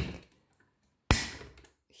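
White plastic lid of a Philips Avent 2-in-1 baby food steamer-blender jar being locked down: a click, then a louder sharp plastic snap about a second in.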